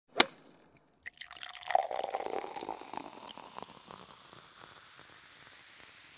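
A sharp click, then from about a second in a dense patter of small clicks and ticks with a brief ringing tone, fading away over the next three seconds.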